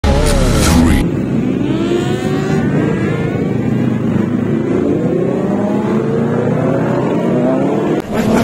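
Several sport motorcycles revving and accelerating, their engine notes rising in pitch again and again, with a loud burst in the first second.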